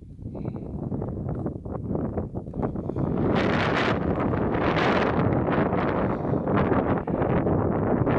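Wind blowing across the camera microphone, building over the first three seconds into a loud, steady buffeting rumble.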